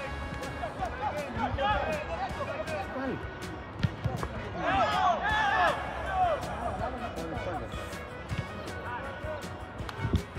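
Background music mixed with voices shouting across a soccer field, with a louder burst of shouting about five seconds in and a single sharp thump a little before it.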